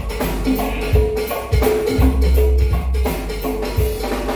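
Live band playing a percussion-led groove: a cowbell struck in a quick, steady rhythm, about four strokes a second, over a bass line and hand drums.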